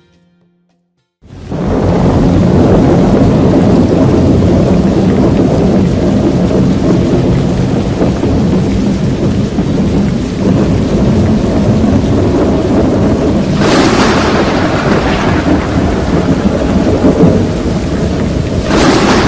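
Heavy storm noise: a loud, continuous deep rumble with a hiss of rain over it, starting suddenly about a second in, with a brief louder hissing surge about three-quarters of the way through.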